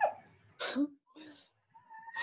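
A dog whining: a couple of short faint whimpers, then a thin, steady high whine near the end.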